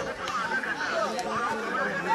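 Several people talking over one another in indistinct group chatter.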